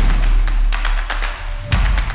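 Intro theme music: a deep, steady bass under several sharp percussion hits.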